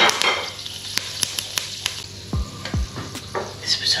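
Whole spice seeds sizzling and crackling in hot ghee in a pot. The sizzle is strongest at first and soon dies down to scattered pops, with a couple of low bumps past the middle.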